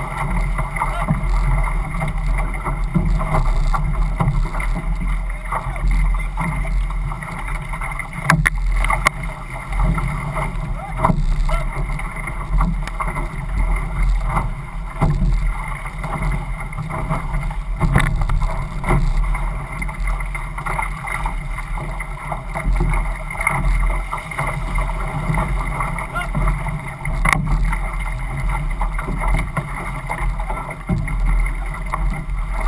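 Six-person outrigger canoe under way at racing pace: steady rush of water and spray along the hull and outrigger float, with low wind rumble on the microphone and a few sharp knocks.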